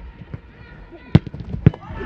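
Two sharp strikes of a football being kicked or headed, about half a second apart, during an attack in the goalmouth, with faint players' shouts around them.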